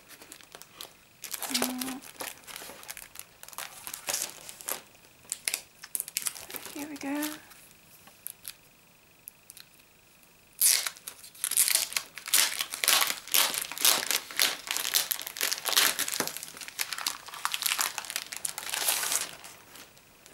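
Clear plastic poster sleeve crinkling as a stack of large paper posters is handled in it: scattered rustles at first, then a long stretch of dense crinkling in the second half.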